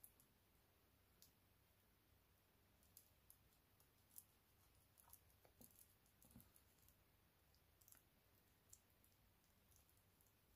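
Near silence with faint, irregular ticks and crinkles from a transfer foil being rubbed down onto a gel nail through a lint-free wipe.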